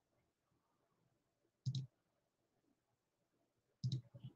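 Two quick double clicks of a computer mouse, about two seconds apart, against near silence.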